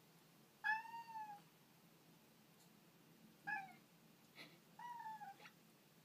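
Tabby cat meowing three times, each call rising then falling in pitch, the middle one short: crying to be let out of a closed door.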